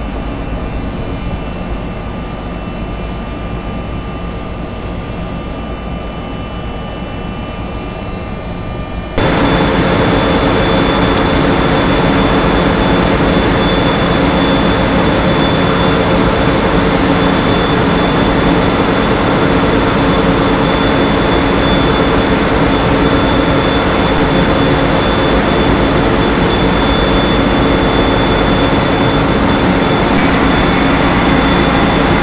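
Offshore platform crane's engine running steadily, a loud even machine noise with steady whining tones through it. About nine seconds in, it steps abruptly louder and stays there.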